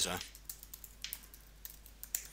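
Faint typing on a computer keyboard: a scatter of soft, irregular key clicks as a username and password are entered.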